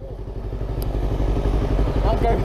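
Motorcycle engines running at a standstill, the low pulsing exhaust note growing steadily louder through the two seconds.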